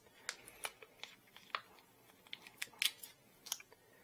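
Irregular small clicks and taps of 3D-printed plastic parts being handled and fitted together by hand, with the sharpest click a little before three seconds in.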